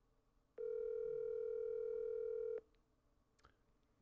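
Smartphone call ringback tone: one steady ring about two seconds long, starting about half a second in, as the outgoing call rings without being answered.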